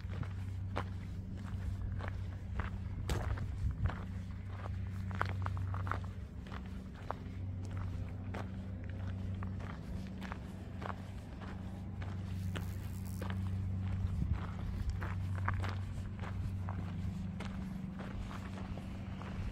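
Footsteps on a gravel path at an even walking pace, over a steady low hum.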